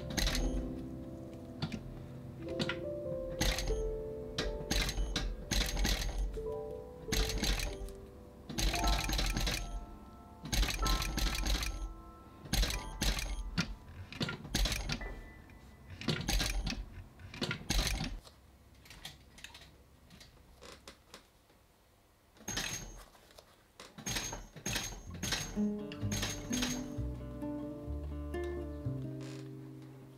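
Industrial sewing machine stitching leather in short runs of under a second each, stopping and starting about a dozen times with a quieter pause partway through, over soft background music.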